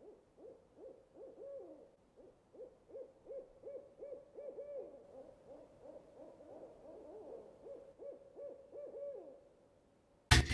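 Owl hooting: a long, fast run of short, faint hoots, a few a second and at times overlapping, that stops shortly before the end.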